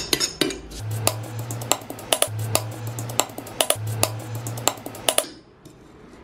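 Metal spoon scraping and clinking against an iron pan as it stirs a thick, gritty paste of coffee powder and coconut oil. It makes a quick, uneven run of sharp scrapes and taps that stops about five seconds in.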